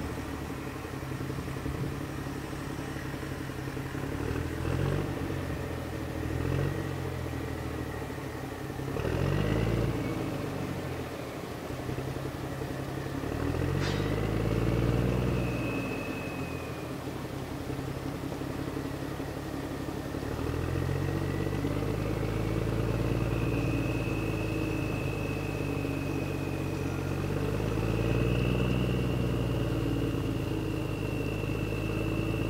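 Small wooden boat's engine running, its low drone rising and falling in pitch every few seconds as the throttle changes, with a thin high whine over it.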